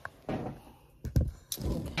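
Handling noise as a phone camera is carried and repositioned, with rustles and a single dull thump a little over a second in.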